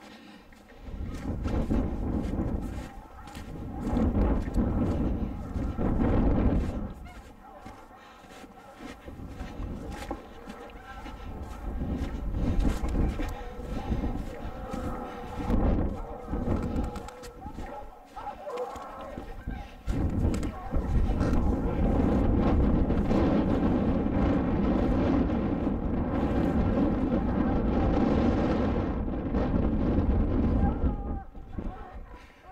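A pack of hunting hounds baying in the distance, the sign the hounds have opened up on a mountain lion. A heavy low rumble of wind and movement on the microphone comes and goes, and is loudest in the last third.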